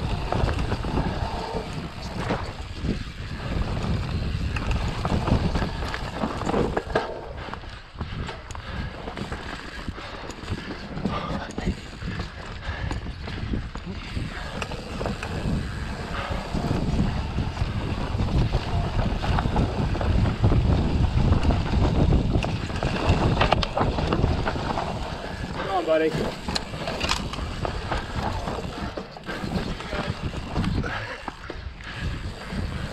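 Mountain bike ridden hard down a dirt forest trail: wind buffeting the camera microphone and tyres rumbling over the ground, with frequent knocks and rattles from the bike over roots and bumps. A short call from the rider near the end.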